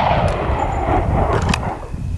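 The last 9mm pistol shot echoes and dies away over about two seconds, over a steady low rumble of wind buffeting the microphone, with a few faint clicks.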